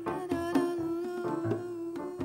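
An instrumental passage of a live jazz song: a stage electric keyboard holds one steady note under chords while bongos are struck by hand in a loose, irregular pattern.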